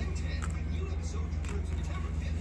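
A steady low hum, with a couple of short soft crunches as a seaweed-wrapped onigiri is bitten and chewed.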